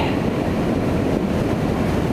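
A 125cc Lance Havana Classic scooter under way: a steady rush of engine, wind and road noise, with no distinct events.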